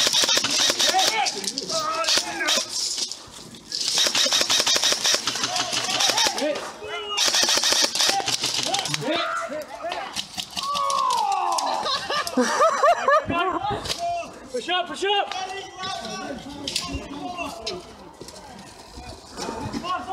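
Airsoft electric rifles firing long full-auto bursts, a fast rattle of clicks, three times in the first half, with shouting and scattered single shots after.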